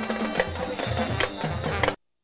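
Marching band playing, brass over a steady drum beat, cutting off suddenly near the end.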